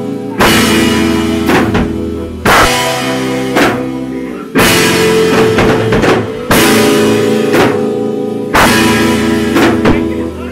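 Live hardcore/crust punk band playing loud: drum kit, distorted guitar and bass. Heavy crashing chord-and-cymbal hits land about every two seconds, each ringing down before the next.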